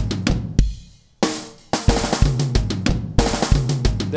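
Soloed tom tracks from a rock drum kit recording played back in a loop: toms ringing and gliding in pitch, with kick, snare and hi-hat spill picked up by the tom mics. The playback fades out about half a second in and starts again a little over a second in.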